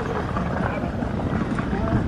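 Wind buffeting the microphone with a steady low rumble, and faint voices of people nearby.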